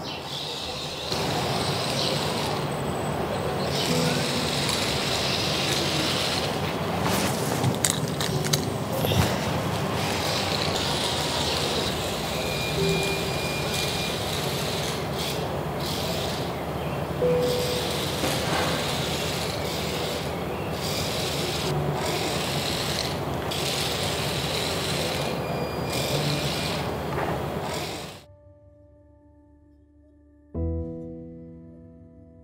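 Small DC gear motors of a homemade robot car running as it drives, the sound dipping and resuming several times. It cuts off near the end.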